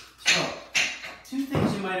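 Heavy breaths after a set of cable shoulder presses: two hard exhalations in the first second, then a man starts speaking near the end.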